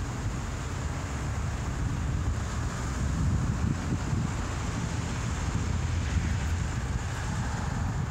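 Wind buffeting the microphone: a steady, fluctuating low rumble.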